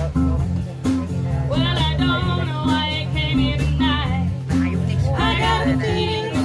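A live band playing: strummed acoustic guitar over a steady, repeating low line. Voices come in over the music about a second and a half in.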